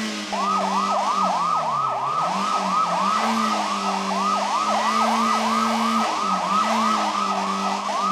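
A vehicle siren in a fast yelp, rising and falling about three times a second, over a low engine drone that dips in pitch twice.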